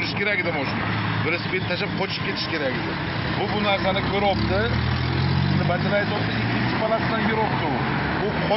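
People talking, with a low steady engine hum under the voices that grows louder about four seconds in.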